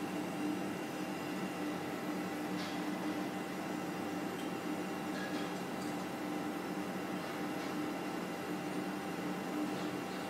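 Steady machine hum with a few faint, soft ticks.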